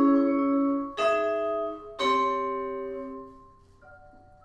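Vibraphone chords struck with mallets and left to ring: a held chord, then new chords about one and two seconds in, the last one dying away; softer single notes begin near the end.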